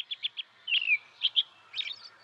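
Small songbirds chirping: a quick run of short high notes, then separate chirps, one sliding downward, about a second apart.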